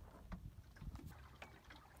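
Faint water lapping against a small sailboat's hull, with a low steady rumble and a few light clicks.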